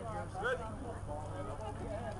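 Indistinct voices of spectators and players calling out during a soccer match, one louder shout about half a second in, over a steady low rumble.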